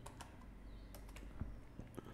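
Faint computer keyboard keystrokes: a handful of separate key clicks, irregularly spaced.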